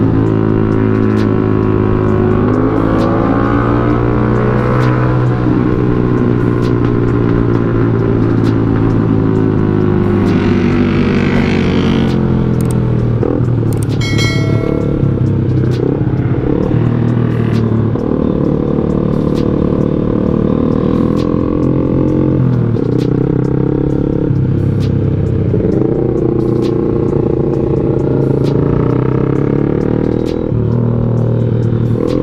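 Motorcycle engine running under way, its pitch rising and falling with throttle and gear changes.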